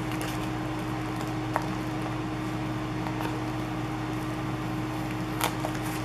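A steady low electrical hum, with faint crinkling and a few small clicks as a dimensional sticker is peeled off its plastic sticker sheet; a slightly sharper crackle comes near the end.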